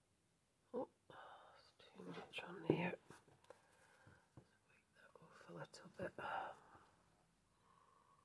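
A woman speaking very quietly under her breath, in two short stretches.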